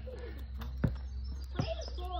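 A sharp thump a little under a second in and a softer one later, a basketball bouncing on a concrete driveway, with faint voice sounds in between.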